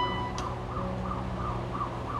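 Grand piano in a quiet passage: a few held notes fading, with a soft new note about two-thirds of a second in. Behind it, a faint warbling tone rises and falls three or four times a second.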